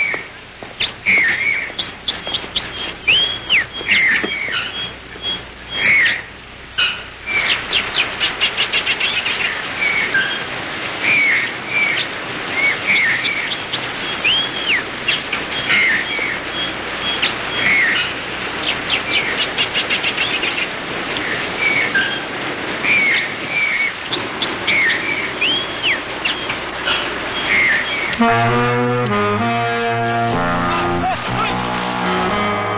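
Several birds chirping and calling over a steady background hiss, with bouts of rapid trills now and then. Guitar music comes in near the end.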